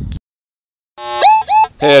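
A man's voice ends, then there is a short stretch of dead silence, then a voice starts again with rising pitched calls.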